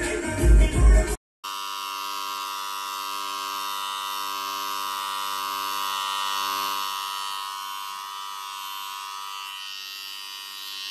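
Music with a heavy beat for about the first second, cutting off suddenly; then electric hair clippers start buzzing steadily as they cut close-cropped hair.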